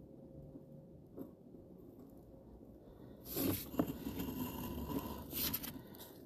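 Scraping and rustling handling noise that starts about three seconds in and lasts about two and a half seconds, with a faint click about a second in.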